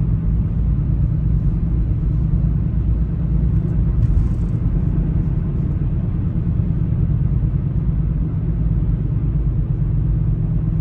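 Steady low rumble of a car driving at road speed, heard from inside the cabin: engine and tyre noise with no change in pace.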